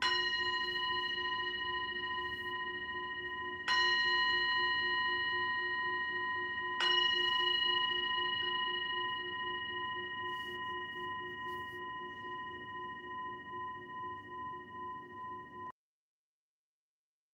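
Singing bowl struck three times, about three seconds apart, each strike ringing on in a long, wavering tone that slowly fades. The ringing cuts off suddenly near the end.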